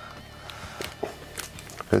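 Clear plastic blister packaging being handled, giving a few light crinkles and clicks spread over the two seconds.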